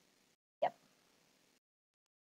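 A single short spoken word, "yep", about half a second in; otherwise faint room tone that cuts out to dead silence twice.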